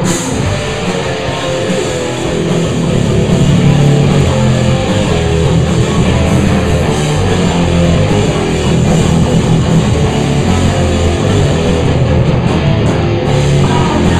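Live rock band playing loud: electric guitars and bass over a drum kit, recorded close to the players.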